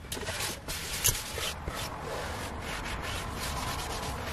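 A wipe being rubbed over a leather car seat in repeated strokes, with one sharp tap about a second in.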